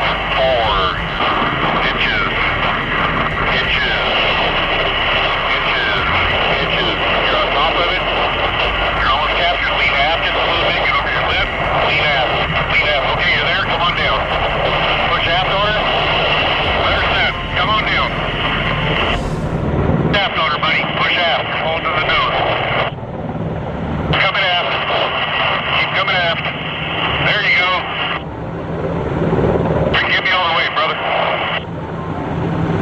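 S-64F Air Crane heavy-lift helicopter's twin turbines and rotor droning steadily, heard through the cockpit intercom, with indistinct radio chatter underneath. The intercom sound thins out briefly a few times in the second half.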